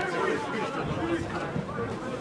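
Voices chattering and calling out at a football match, players and spectators talking over open-air ambience.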